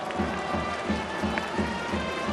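Baseball cheering section's trumpets playing a fight-song melody over a steady drumbeat of about three beats a second, from the fans of the batting team.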